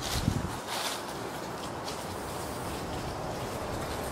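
Footsteps: a couple of low thuds and a brief scuff in the first second, then steady outdoor background noise.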